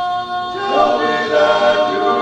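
A vocal quartet singing a cappella in close barbershop harmony: a held chord, then the voices move to new notes about half a second in.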